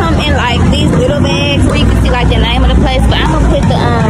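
People talking over a loud, steady low rumble.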